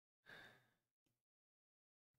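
Near silence, broken by a faint breathy exhale of quiet laughter through the nose or mouth about a quarter second in, lasting about half a second, and a softer short breath about a second in.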